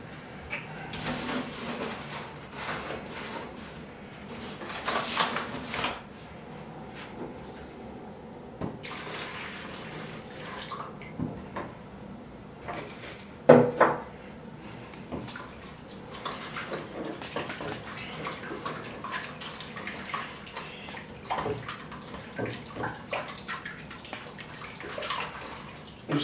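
Liquid splashing and sloshing in a plastic bucket as a batch of cleaning-gel mixture is poured and stirred with a wooden stick. Light clatter of plastic containers and glassware runs through it, with one sharp knock about halfway through.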